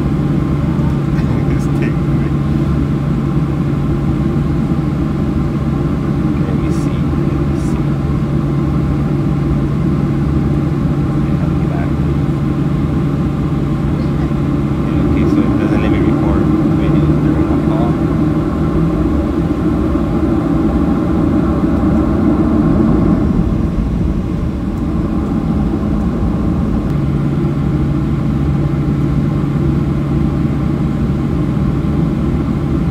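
Boeing 737 jet engines idling, heard from inside the passenger cabin as a steady hum with a low drone. From about halfway through, the engines spool up for several seconds as the aircraft moves onto the runway, then ease back to idle.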